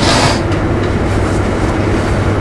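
Steady low hum and rumble of room background noise, with a brief rustle in the first half-second.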